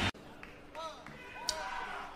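A faint voice in a short quiet gap just after the music cuts off at the start, with a single sharp tap about one and a half seconds in.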